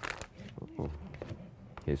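Soft kitchen handling noises: a brief clatter at the start, then light scraping and rustling, under faint low voices.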